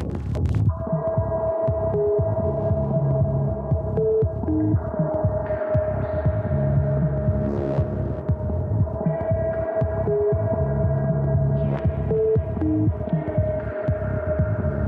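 Electronic drone soundtrack: a steady hum with a low throbbing pulse and short pitched beeps, the phrase repeating about every eight seconds.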